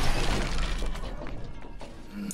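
A television screen's glass shattering under a sledgehammer blow, the crash and falling shards dying away with a low rumble over intro music. It fades steadily and is nearly gone by the end.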